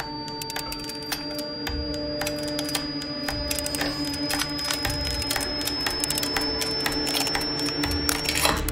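Vintage folding Polaroid instant camera rattling with dense, irregular clicks while a thin high whine climbs slowly, the sound of the camera charging up on its own. A low sustained musical drone runs underneath.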